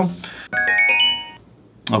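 AKIXNO 40 W Bluetooth soundbar playing its short electronic prompt chime: a quick run of rising notes lasting about a second, starting half a second in.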